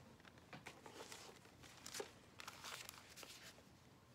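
Faint, intermittent rustling and crinkling of paper as a thin paper bag and a stack of paper envelopes and cards are handled, with a few light taps.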